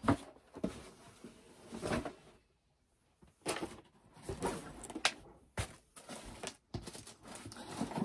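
Hands rummaging through and moving items and packaging: irregular knocks and bumps with rustling in between, and a brief stretch of silence a little before the middle.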